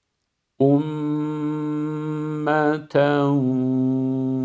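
A man reciting the Qur'anic phrase "ummatan wasaṭā" in slow, melodic tajweed chant, stretched into long held notes. The voice starts about half a second in, breaks briefly near the middle, then falls into a second long held note.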